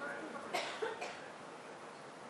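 A person coughing twice in quick succession, about half a second in, over faint background murmur.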